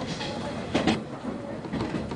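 Commuter train running, heard from inside a crowded car: a steady rumble with a few knocks from the wheels and car, the loudest a little under a second in.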